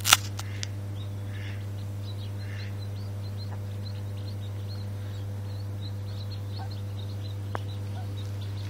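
Mallard ducklings peeping faintly in short, high, repeated notes as they huddle under the hen, over a steady low hum. A sharp click right at the start is the loudest sound.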